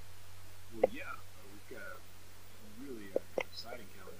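Soft, low voices speaking, too quiet to make out, broken by three sharp clicks: one about a second in and two close together near the end. A steady low hum runs underneath.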